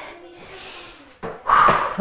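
A woman's short, hard breath out about a second and a half in: a noisy puff with no voice in it, the breathing of someone straining through exercise.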